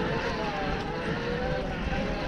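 Electric e-bike mid-drive motor whining, its pitch wavering up and down with speed, over a steady rumble of wind and tyres on a dirt trail.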